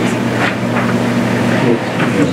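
A steady low hum of room tone under faint murmured voices.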